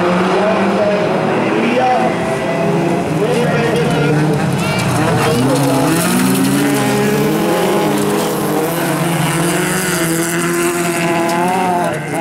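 Several bilcross cars' engines revving hard together as they race, their overlapping pitches climbing and dropping.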